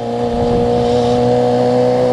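Yamaha FZ6R's inline-four engine running at a steady pitch while the motorcycle is ridden along at city speed.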